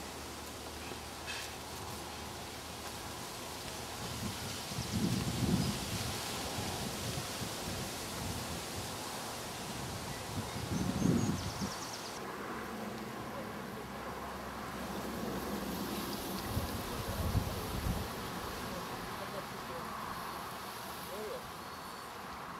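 Outdoor ambience: a steady background hiss with a few low rumbling swells, about five, eleven and seventeen seconds in, and faint indistinct voices.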